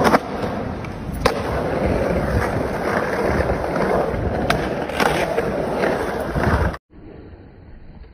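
Skateboard wheels rolling on a concrete bowl, a continuous rumbling roll broken by sharp clacks of the board about four times. It cuts off abruptly near the end and is followed by a quieter, duller stretch.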